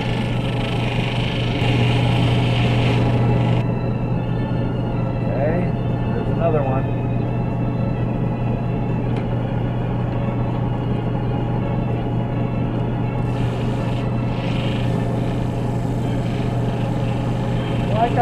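Electric end lap sander running with a steady motor hum, a stone held against its spinning, water-fed 600-grit wet/dry sandpaper disc. A hiss of wet sanding comes and goes, louder in the first few seconds and again near the end.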